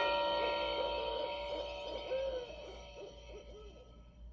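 A series of owl hoots over a steady eerie drone of held tones, all fading out toward the end.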